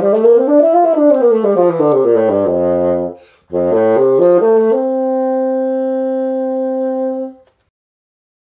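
Bassoon playing a scale up and back down. After a short break about three seconds in, it plays a second run upward that ends in a long held note, which stops shortly before the end.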